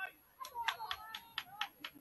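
A quick, even run of about seven sharp clicks, roughly four a second, starting about half a second in.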